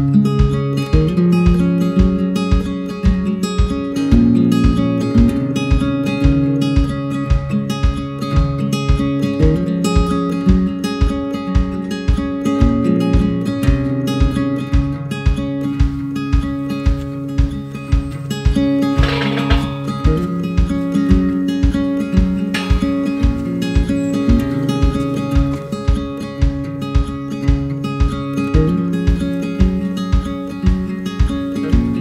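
Background music: an acoustic folk instrumental with strummed acoustic guitar over a steady beat.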